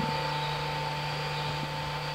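Steady background machine hum with an even hiss, like a shop fan or air-handling unit running.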